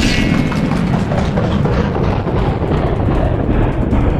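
Action-scene sound effects: a loud, steady deep rumble with a whoosh that falls slowly in pitch, and a brief metallic ring near the start.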